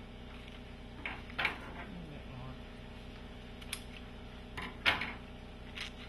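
Scissors snipping Dacron sail tape and hands handling the stiff sailcloth: a handful of short, crisp snips and crinkles over a steady low hum.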